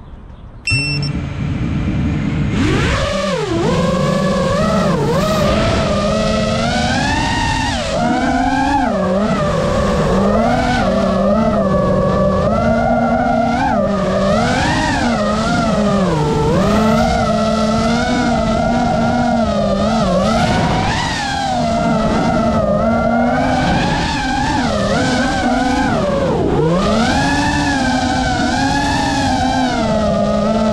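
A 180-size FPV racing quadcopter's motors and propellers spin up a couple of seconds in, then whine loudly in flight, the pitch swooping up and down continuously as the throttle changes.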